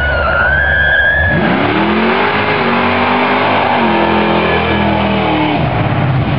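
Dodge Dart's 408-cubic-inch V8 accelerating hard past the camera at full throttle. Its loud note rises steeply, holds high, steps down partway through, and fades out near the end.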